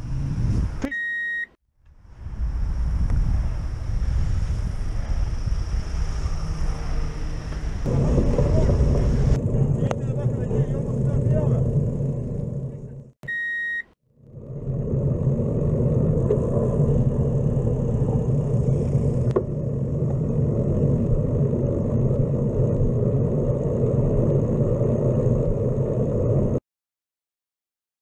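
Steady wind and road rumble on a cyclist's camera while riding, broken twice by a short, high, steady beep and a moment of silence: once about a second in, and again about 13 seconds in.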